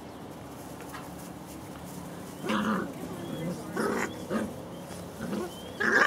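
German Shorthaired Pointer puppies making short play growls and yips, about half a dozen brief calls in the second half, the last one loudest.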